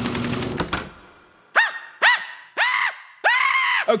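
A rapid rattling sound effect stops under a second in and rings off. Then come four high-pitched screams, each rising and falling in pitch, the last two longer than the first.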